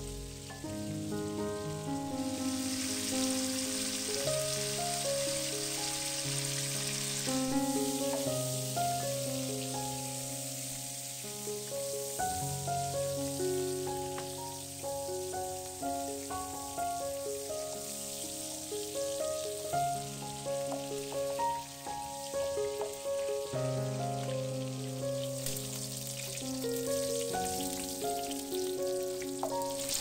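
Background music, a slow melody of held notes, plays over the steady sizzle of cubed pork belly frying in lard in an aluminium pot; the sizzle is strongest in the first several seconds.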